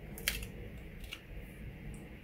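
Plastic screw lid being twisted off a small jar of embossing powder: a short scrape about a quarter second in, then a few faint clicks of plastic handling.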